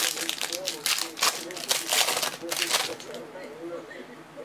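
Foil trading-card pack wrapper crinkling and tearing as it is opened by hand, a quick run of crackles loudest about two seconds in and thinning out near the end.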